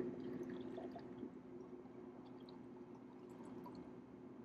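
A shaken cocktail strained from a stainless steel shaker tin into a tall glass: a faint, thin stream of liquid pouring, with a few small ticks, over a steady low hum.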